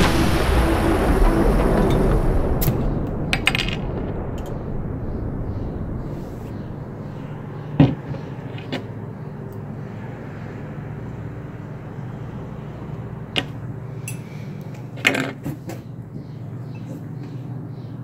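Music ends on a heavy hit that dies away over the first few seconds. About eight seconds in there is one sharp snap as a crown cap is pried off a glass beer bottle with a bottle opener, followed by a few lighter clicks and knocks later on over a faint steady hum.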